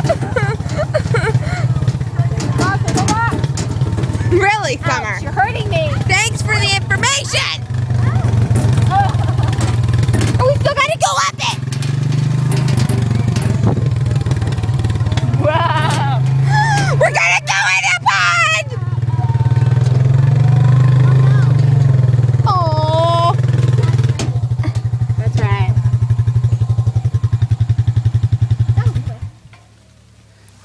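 ATV engine running steadily as it tows a small trailer, its note somewhat louder through the middle, with young women's shrieks and excited voices over it. The engine sound drops away suddenly near the end.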